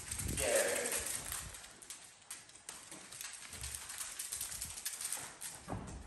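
Dogs' claws clicking irregularly on a hardwood floor as several dogs move about.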